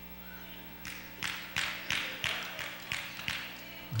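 Hand claps in a rough rhythm, about three a second, starting about a second in, over a steady low electrical hum.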